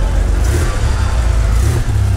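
Air-cooled Porsche 911 flat-six engine running at low revs as the car rolls slowly past and away, a steady low rumble.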